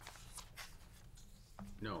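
Faint rustling and small clicks of papers being handled in a quiet room, then one spoken word, "no", near the end.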